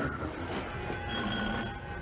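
Doorbell on an apartment intercom panel ringing once: a brief, steady, high ring about a second in, lasting under a second.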